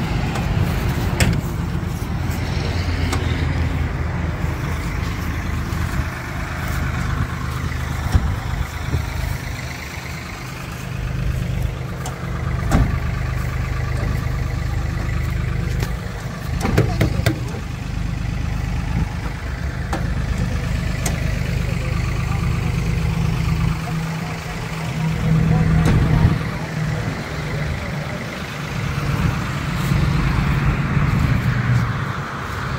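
An engine idling steadily, with a few scattered knocks and clatters.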